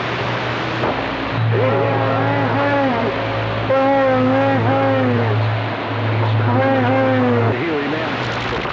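CB radio receiving a distant station over skip: a voice comes through garbled and hard to make out under static hiss, riding on a steady low hum that starts with the voice about a second and a half in and cuts off near the end.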